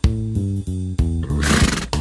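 Light children's background music with steady bass notes, and about a second and a half in a short harsh animal call: a zebra sound effect.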